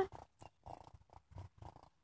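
Young raccoon purring faintly, a soft, uneven run of short pulses.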